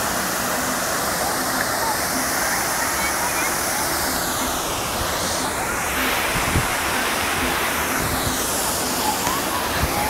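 Tall jets of a large ornamental fountain rushing and splashing down into the pool in a steady roar of water, its hiss sweeping slowly up and down in tone.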